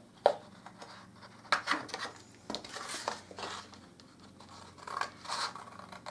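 Scissors snipping through card: several short, sharp cuts with pauses between them, as the card spines are trimmed off.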